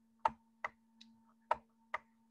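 Four short, sharp clicks at uneven spacing from a computer input device as digits are handwritten on screen, over a steady low electrical hum.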